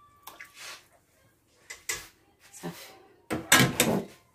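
Kitchen handling sounds: a few light knocks and clinks of utensils against a steel pot, then a louder burst of clattering handling noise near the end.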